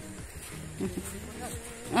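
A flying insect buzzing, a steady low-pitched hum that fades in and out. A few words of speech start at the very end.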